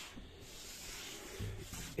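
A hand sweeping and rubbing across the bare, unfinished wood of a solid-wood panel door, a steady dry hiss, brushing off leftover wood shavings.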